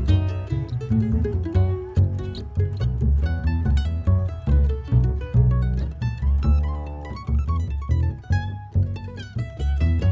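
Acoustic mandolin played live, picking quick runs of single notes over low bass notes, an instrumental passage with no singing.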